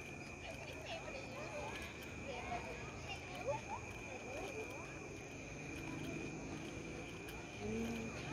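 Faint, distant voices of people chatting outdoors, over a steady high-pitched whine.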